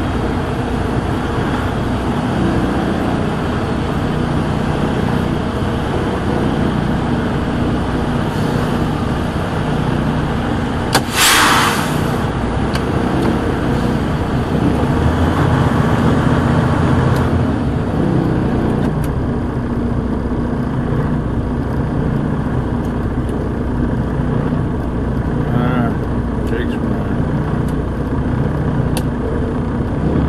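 Semi-truck diesel engine running steadily at low speed while the rig is maneuvered. About eleven seconds in there is one short, loud air hiss.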